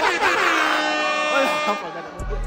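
A group of people cheering and shouting together, with a long, steady air-horn blast over them that cuts off just before the end.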